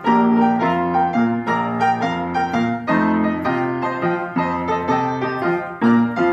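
Four-hands piano duet on an upright piano playing a rumba, with chords over a low bass line.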